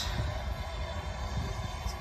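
Low rumbling background noise with a faint steady hum.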